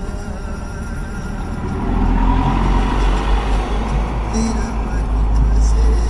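Low engine and road rumble of a vehicle driving, getting louder about two seconds in.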